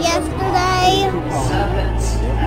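A child's voice singing a short phrase, holding one note for about half a second, over crowd chatter and background music.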